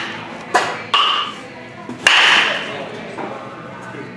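Batting-practice impacts in an indoor batting cage: three sharp knocks of a hit baseball about half a second, one second and two seconds in, the last two with a short ringing ping.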